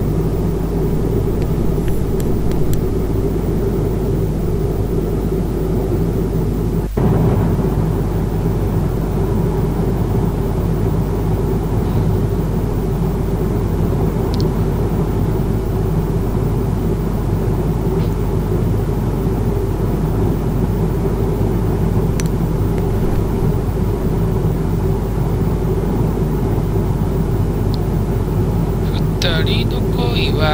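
Steady jet airliner cabin noise in cruise, the low rumble of engines and airflow heard from a window seat, with a brief break about seven seconds in.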